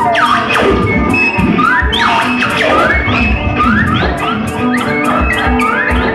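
A noise band playing live: dense electronic noise from guitar and effects pedals, with short rising electronic chirps repeating roughly twice a second over held low tones and scattered clicks.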